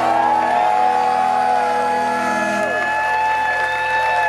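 A live band's final held chord ringing out while the crowd cheers, whoops and applauds.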